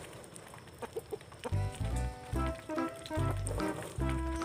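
Background music with a repeating bass line that comes in about a second and a half in. Chickens cluck under it as they feed.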